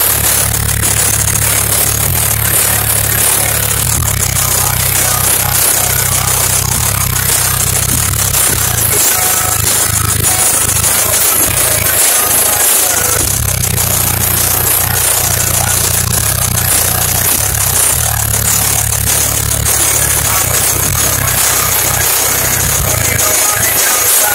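Very loud car-audio subwoofer bass playing music inside a vehicle's cabin, so heavy that the sound is distorted and buzzing. The bass breaks off briefly a couple of times near the middle.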